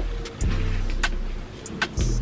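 Background music with a steady low bass line, and several short sharp clicks as the bag is handled.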